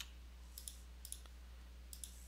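Computer mouse clicking while parts are being selected in CAD software: a few short, sharp clicks, some in quick pairs, over a faint steady low electrical hum.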